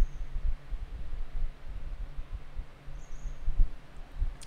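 Microphone noise: irregular soft low thumps and rumble over a steady low hum and faint hiss, with the strongest bump about three and a half seconds in.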